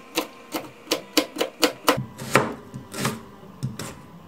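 Kitchen knife chopping carrot on a plastic cutting board: a run of sharp knocks, about three a second, coming quicker for a moment between one and two seconds in.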